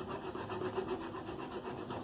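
A wedge of hard Parmigiano Reggiano cheese scraped up and down a metal grater in steady, repeated strokes, about three a second.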